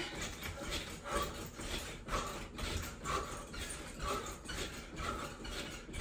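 Cellerciser rebounder's springs and mat creaking with each landing of a steady jumping rhythm, about two landings a second.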